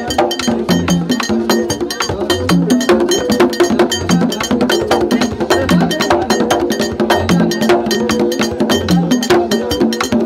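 Live Haitian Vodou drum music: a struck metal bell keeps a fast, even pattern over hand drums, with a deep drum stroke about every second and a half.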